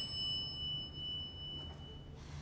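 A high, bell-like ringing tone, struck just before and slowly dying away over about two seconds, above a faint low hum.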